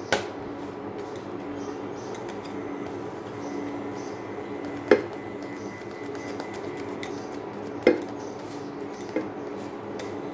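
Nonstick frying pan knocking sharply four times as a roti is turned and handled in it, the last knock lighter, over a steady hum.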